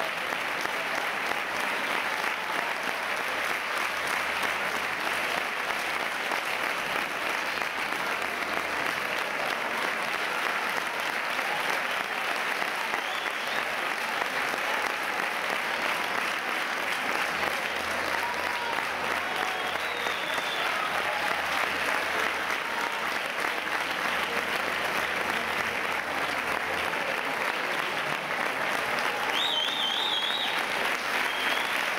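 Theatre audience applauding steadily, a dense even clapping that does not let up.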